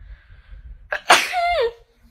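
A woman sneezing once: a sudden sharp burst about a second in, with a short voiced tail falling in pitch.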